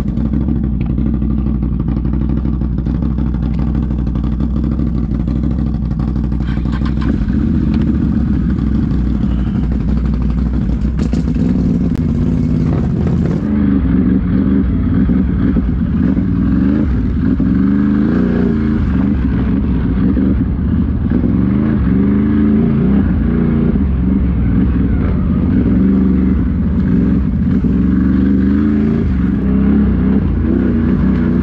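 Can-Am Renegade XMR quad's V-twin engine running under way. From about halfway through, the engine speed rises and falls repeatedly as the throttle is worked.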